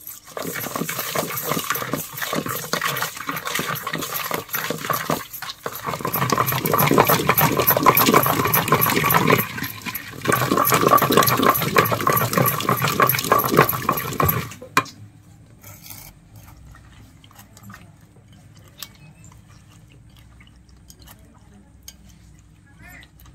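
Wooden masher pounding boiled amaranth leaves and red chillies in an aluminium pot: a fast, loud run of strokes against the pot, with a brief break about halfway, stopping about two-thirds of the way in.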